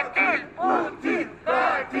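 A crowd of protesters chanting a slogan in unison, in short shouted syllables at a steady rhythm.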